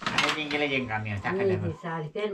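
Dishes clattering: a plate knocked against a metal pan right at the start, then a person's voice talking.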